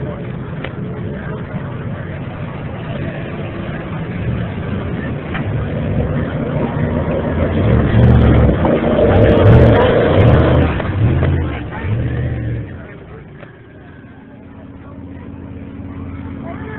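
Lifted 4x4 mud-bogging truck's engine revving hard in pulses, growing louder as it comes close, loudest about eight to ten seconds in, then falling away suddenly; voices of a crowd underneath.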